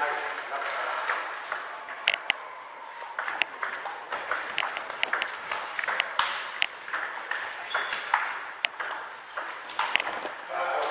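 Table tennis ball clicking off bats and the table in a doubles rally: a few sharp ticks about two seconds in, then a quick run of two or three ticks a second from about three seconds in to the end.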